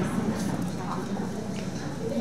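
Indistinct chatter of several people talking at once in a room, with a few light taps or clicks.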